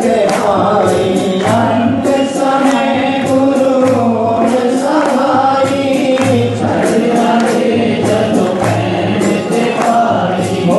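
Voices singing a Hindi devotional bhajan to Sai Baba in chorus, with instrumental accompaniment.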